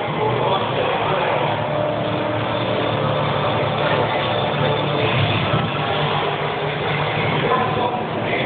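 A car engine running steadily, amid background crowd noise.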